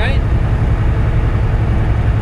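Cab noise of a Volvo 780 semi truck cruising on the highway: its Cummins ISX diesel engine and the road make a steady low rumble.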